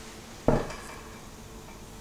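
A single sharp knock about half a second in, dying away quickly, over low steady background noise.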